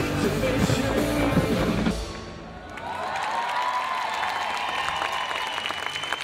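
Live rock band playing on an outdoor stage, cutting off abruptly about two seconds in; after a short lull a large crowd applauds and cheers, with a held note sounding over the clapping.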